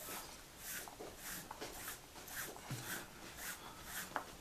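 Nylon paracord being pulled through a Turks head jig, the cord rubbing against itself and the board in a run of short, soft swishes, about two or three a second.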